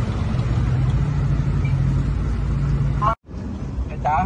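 Steady low motor hum with a constant low tone. A brief fragment of a voice sounds about three seconds in, cut off short.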